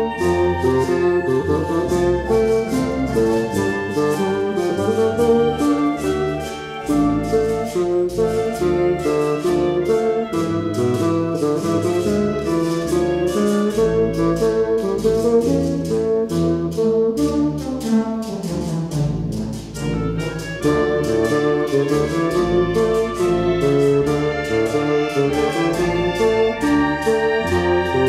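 Live recording of a solo bassoon with a wind ensemble playing a Puerto Rican danza. The music plays steadily with many pitched notes and eases briefly twice.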